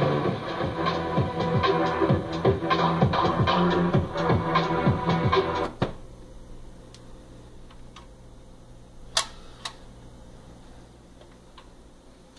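Music from the 1961 Admiral stereo console's tube FM radio playing through its speakers, cut off abruptly about six seconds in. A faint steady hum remains, and two sharp clicks follow about three seconds later.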